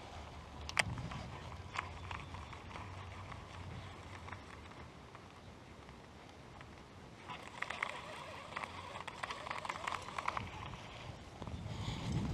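Low wind rumble on the microphone with a couple of sharp clicks near the start. From about seven seconds in, a baitcasting reel is cranked for about four seconds, a fast rattle of clicks as the lure is retrieved.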